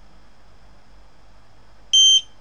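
A short, high electronic beep near the end, from the buzzer on a SparkFun Qwiic RFID reader board as it reads a scanned tag; before it, only a low steady background with a faint high whine.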